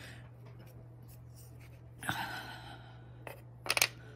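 Hands working a sheet of polymer clay and a plastic circle cutter on a marble work surface. There is a brief rustle about halfway through, then a quick run of sharp clicks and taps near the end, over a steady low hum.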